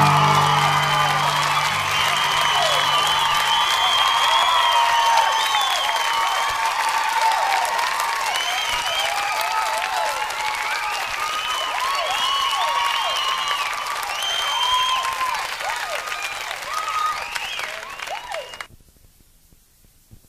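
Live audience applauding and cheering at the end of a song, over the last guitar chord ringing out in the first few seconds. The applause cuts off abruptly near the end.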